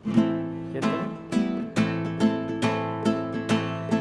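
Nylon-string classical guitar strummed in a steady rhythm, starting suddenly at the very beginning, about two to three strums a second: the introduction to a song that is sung right after.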